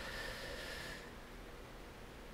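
Quiet room tone: a low, even hiss, with a faint steady high tone during the first second.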